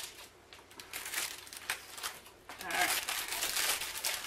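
Plastic wrappers and bags crinkling as gingerbread house kit pieces and candy are unwrapped and handled. It is sparse at first and becomes a busy crinkle about two and a half seconds in.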